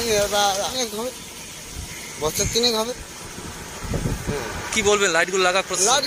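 A man speaking Bengali in short phrases with pauses between them. A low rumble sounds briefly about four seconds in.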